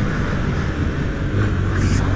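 Honda CB300 single-cylinder motorcycle running at road speed, with wind rushing over the helmet-mounted microphone; a steady low engine hum comes up about halfway through.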